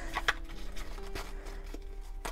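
A small stack of paper stickers handled in the hands, with a few soft rustles and light taps as the sheets are shuffled and squared up.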